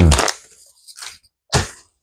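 Mouth sounds from chewing a large wad of shredded bubble gum close to a clip-on mic: a faint wet chew about a second in, then a louder, sharp smack.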